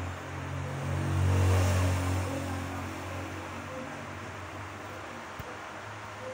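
A low steady mechanical hum that swells between one and two seconds in, then eases back to a steady level.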